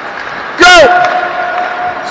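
A man shouts "Go!" and draws it out into one long, steady call, over a low background hiss.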